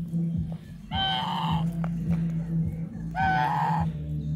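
Domestic geese honking: two loud calls, the first about a second in and the second about three seconds in, over a steady low hum.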